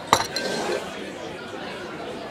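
A drinking glass set down on a table top with one sharp clink just after the start and a brief ring, over background crowd chatter.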